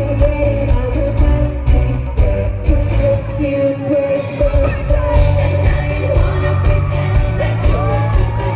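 A female pop group performing live over a loud arena PA: pop music with a heavy bass beat and female vocals. The low end thins out briefly about halfway through, and the sung lines slide up and down near the end.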